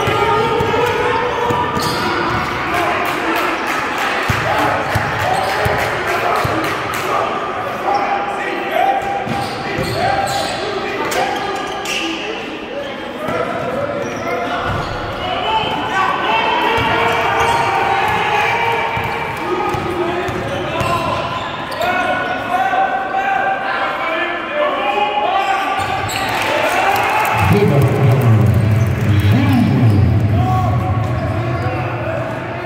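Basketball game sounds in a gymnasium: the ball bouncing on the court floor as players dribble, with players and bench calling out, all echoing in the hall. A low steady hum comes up near the end.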